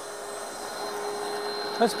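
Kitchen Champ mixer's motor driving its whisks in an empty bowl at a steady speed, with an even whine, having just spun up.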